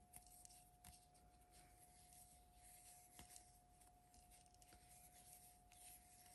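Near silence: a faint steady high tone with a few soft, irregular ticks from a crochet hook and yarn being worked by hand.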